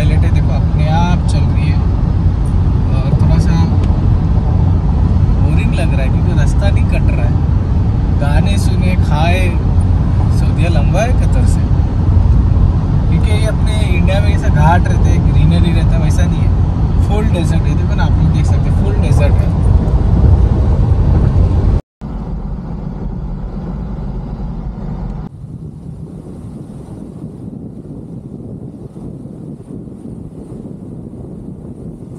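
Steady low road and engine rumble inside a Toyota SUV cruising at highway speed, about 118 km/h, under a man's talking. About 22 seconds in it cuts off briefly and gives way to a quieter, thinner road and wind noise.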